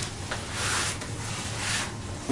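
Rustling and scraping from a hand digging into a pocket of a fabric backpack tackle bag that holds plastic 3700-series tackle trays, in two soft stretches.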